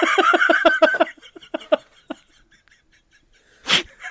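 Laughter in quick repeated bursts that trails off after about two seconds, followed by a pause; shortly before the end, a single short, sharp burst of noise.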